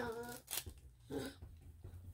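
A mostly quiet small room with a few brief, faint voice sounds: the end of a spoken word at the start, then two short vocal snatches about half a second and a second in.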